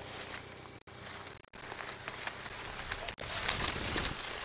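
Steady high-pitched drone of insects, typical of crickets, with a few faint rustles and steps in grass near the end.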